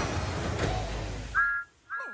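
Background music and room noise fading out, then two short toots of a two-tone whistle near the end, separated by a brief silence.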